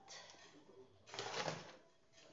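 Metal hand scoop digging into and turning a dry mix of crushed charcoal, soil and carbonized rice hulls in a plastic tub: a gritty scrape and rattle of granules, twice, the louder about a second in.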